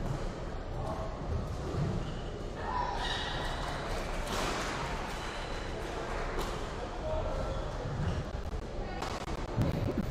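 Sounds of a badminton match: several dull thuds of players' feet landing on the court over a steady background of voices and noise from the hall, which swells for a few seconds in the middle.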